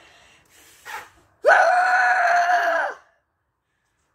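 A child's loud, drawn-out yell lasting about a second and a half, gliding up in pitch at its start and then held on one note until it breaks off.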